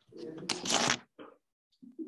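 A short, loud rustle close to a microphone about half a second in, lasting about half a second, amid brief low voice murmurs.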